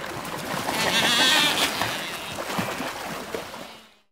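A crowded flock of seabirds, albatrosses among them, calling over one another while squabbling over food on the water: many wavering calls overlapping, loudest about a second in and fading away near the end.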